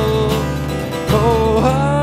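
Acoustic guitar strummed steadily while a man sings long held notes, gliding up into a new note about a second and a half in.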